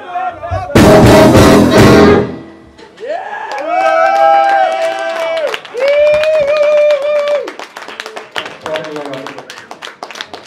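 Live jazz-rock band playing one loud full-band hit of about a second and a half, then two long, steady saxophone notes, the first with several notes stacked together. Near the end, talk and scattered clicks from the room come through.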